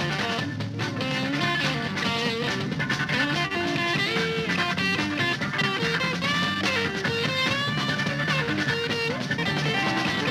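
Rock band music in which an electric guitar plays a busy lead line with bent, gliding notes over a steady bass and rhythm backing.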